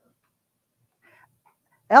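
Near silence for most of the moment, with a faint brief sound about a second in; near the end a woman starts speaking.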